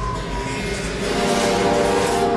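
Sustained dark soundtrack music with a rushing noise that builds from about a second in and peaks near the end.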